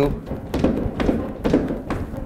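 Sneakered feet stepping on and off a plastic aerobic step platform in a quick drill, a knock about every half second.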